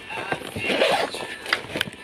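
Handling noise of a backpack being opened, with two sharp knocks in the second half.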